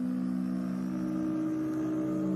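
Low, steady drone of a few held tones: an eerie ambient music bed.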